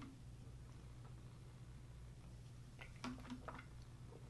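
Near silence: room tone with a low steady hum while a protein shake is drunk from a shaker bottle. A few faint swallowing and mouth clicks come about three seconds in.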